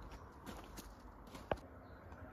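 Footsteps crunching on gravel, faint and uneven, with one sharp click about one and a half seconds in.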